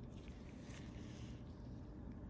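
Steady low background rumble, with faint soft scratchy ticks in the first second or so.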